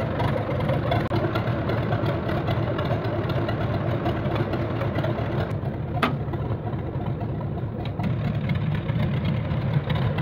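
An engine running steadily at idle, with one sharp click about six seconds in.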